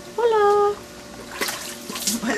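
Faint splashing of water in a concrete wash basin as a plastic bowl is moved about in it, with a few small knocks. About a quarter second in, one short high-pitched voice sound, falling slightly, is the loudest thing.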